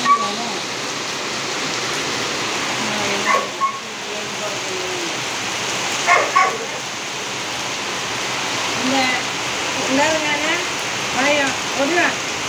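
Heavy rain falling steadily on a tiled courtyard. A few short voiced calls cut in over the rain, about 3 s in, around 6 s, and several near the end.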